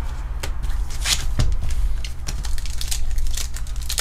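Foil booster pack wrapper crinkling in the hands as it is picked up and torn open, a run of short sharp crackles.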